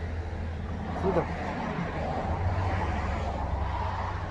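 A steady low rumble with a brief voice about a second in.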